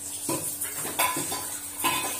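Three sharp metallic clinks of pressure-cooker metal, with short ringing, over a steady high hiss of steam escaping from the aluminium pressure cooker's open vent pipe.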